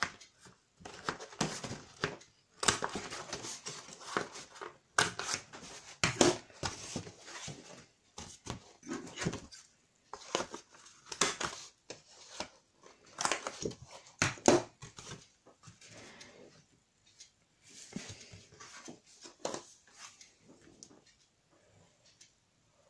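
Handheld corner-rounder punch snapping through the corners of kraft cardstock and patterned paper, a sharp click every few seconds, with paper being handled and shifted between cuts.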